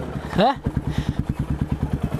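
Yamaha Lander 250 dirt bike's single-cylinder four-stroke engine idling with an even low putter, about thirteen beats a second.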